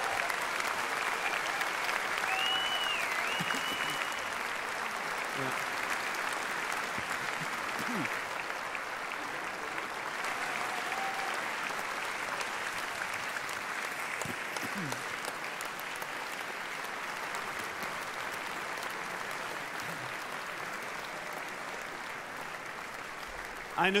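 Large audience applauding steadily, slowly dying down.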